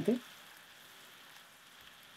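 Butter sizzling faintly and steadily as it melts in a hot stainless-steel saucepan.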